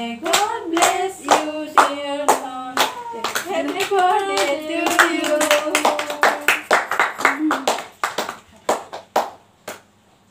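Several people clapping in time, about two claps a second, while women sing a birthday song; the singing stops a little over two-thirds of the way in and a few scattered claps follow before the clapping dies out.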